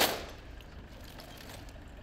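One sharp crack as an honour guard's rifles are struck in unison in a drill movement, fading within a fraction of a second, followed by faint open-air background.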